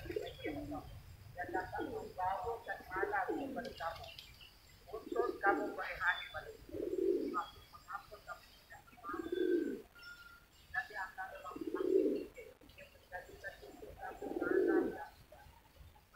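Doves cooing, a low call repeating about every two to three seconds, with smaller birds chirping higher up.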